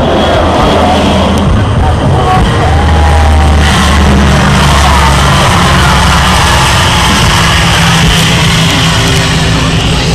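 Lockheed C-130H Hercules landing, its four turboprop engines and propellers giving a loud, steady drone with a low propeller hum, loudest a few seconds in as it passes on the runway.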